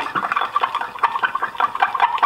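A metal spoon stirring melted soft-plastic bait mix in a glass measuring cup: a quick, uneven run of scrapes and clicks against the glass as colourant is worked in.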